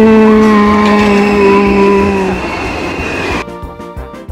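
Steel roller coaster train running along its track: a loud, steady droning tone that sinks slightly in pitch and fades out about two and a half seconds in. Background music takes over near the end.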